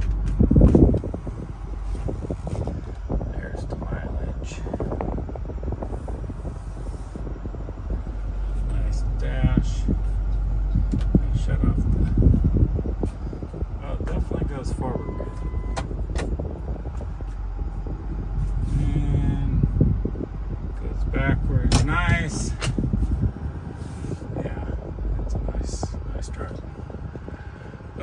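A 2009 Ford F-550's 6.4-litre Power Stroke diesel V8 running, heard from inside the cab as the truck starts a slow test drive, with a steady low rumble and scattered clicks and knocks. A short steady tone sounds about halfway through.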